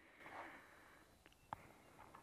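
Near silence: faint background hiss with one faint click about a second and a half in. No clear cicada buzz is heard.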